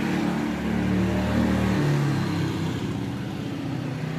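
A road vehicle's engine running close by, its pitch shifting about two seconds in, over a steady hiss of street traffic.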